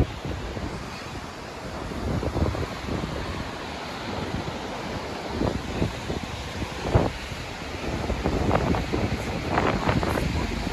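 Rough sea surf breaking and washing on rocks at the foot of sea cliffs, a continuous rushing noise. Wind gusts buffet the microphone, loudest about seven seconds in and again near the end.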